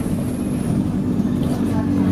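Engine and road noise heard from inside a moving vehicle's cabin: a loud, steady low hum over a rumble.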